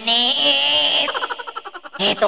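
A high-pitched, wavering squeal of laughter held for about a second, then breaking into quick, shaky laughing pulses that fade out.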